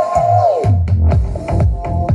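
Electronic dance music played through a Philips NX-5 tower speaker. A held synth note slides down about half a second in, then a steady beat with deep bass comes in.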